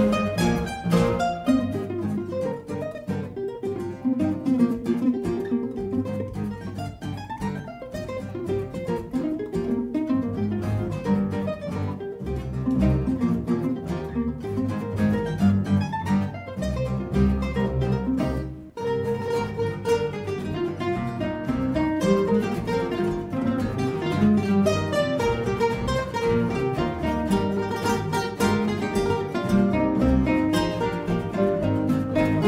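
Ensemble of classical guitars with a large acoustic bass guitar playing an upbeat pop arrangement, many plucked notes and chords sounding together. The playing breaks off for a moment about two-thirds of the way through, then carries on.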